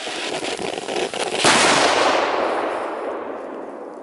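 Funke Big Assorted Flowers ground firework burning, a dense hiss with scattered crackles. About a second and a half in it breaks into a sudden loud burst that fades away over the next two seconds.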